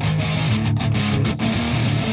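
Sampled electric guitar from the UJAM Virtual Guitarist IRON 2 plugin playing a choppy, staccato rock riff through its crunch amp with a stomp-box effect.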